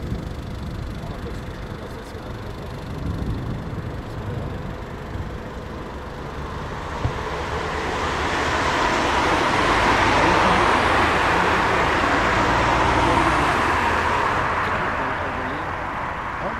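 Boeing 737 airliner's twin jet engines running at taxi power, a low rumble with a hiss that swells to its loudest past the middle and then eases off as the jet rolls by.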